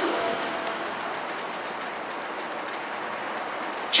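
Steady, even hiss of background room noise with no voice in it.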